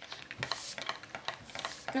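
Light, irregular clicks and taps of scratch cards and a coin being handled on a wooden tabletop.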